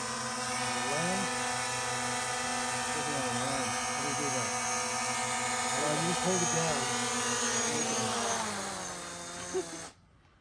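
Small quadcopter drone's propellers whining steadily as it hovers low over the water, fading near the end as it settles onto the surface. Faint voices in the background.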